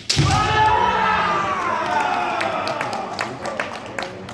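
Kendo strike: a fighter's stamping lunge thumps on the wooden floor with a shinai hit, followed by a long drawn-out kiai shout that falls in pitch. Sharp clicks of bamboo shinai and feet follow; the strike scores a point.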